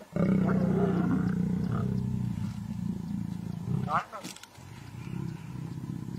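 African lions growling during mating: a low, drawn-out growl for the first two seconds or so that then fades, and a short, higher snarl about four seconds in.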